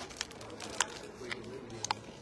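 A plastic water bottle giving a few sharp crackles and clicks as it is drunk from and handled, over a faint background murmur.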